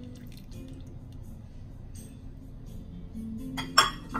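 Soft background music with a faint trickle of melted butter poured into batter, then a single sharp glass clink near the end as a small glass bowl is set down.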